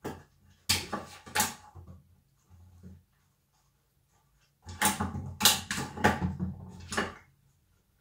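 A dog nosing balls around in a muffin tin on a wooden floor to get at hidden treats: the balls and tin knock and clatter, with two sharp knocks about a second in and a longer run of knocks and rattling from about five to seven seconds in.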